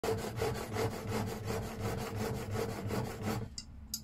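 Steel blade of a No. 5 bench plane, held in a honing guide, rubbed back and forth on a 1200-grit diamond sharpening plate: quick, even scraping strokes, about six a second, while the edge is re-honed. The strokes stop about three and a half seconds in, followed by two light clicks as the guide is handled.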